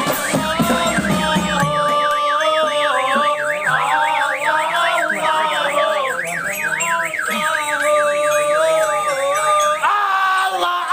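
A marching drum band's drums playing for about two seconds, then giving way to a warbling siren-like tone that swoops up and down about four times a second over held notes.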